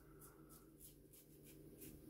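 Very faint, short scratchy strokes of a RazoRock Gamechanger double-edge safety razor cutting stubble through lather, a few strokes spaced a fraction of a second apart, shaving against the grain.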